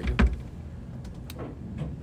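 A single low thump just after the start, over a steady low rumble with a few faint clicks.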